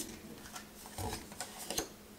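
Tarot cards being shuffled by hand: soft, irregular clicks and flicks of card stock, coming more often in the second half.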